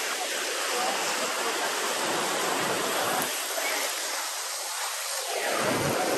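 Small surf waves washing in shallow water, mixed with wind rushing over the microphone. The rush swells and eases, dips a little past the halfway point and swells again near the end.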